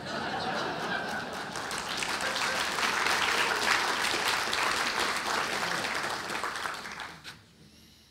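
Audience applause, swelling over the first few seconds and dying away about seven seconds in.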